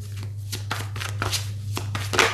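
Tarot cards being shuffled by hand: a run of quick, irregular light clicks and flicks, about five a second, over a steady low hum.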